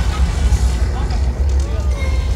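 Stunt-show soundscape after the pyrotechnics: a deep, steady rumble with music and scattered voices over it.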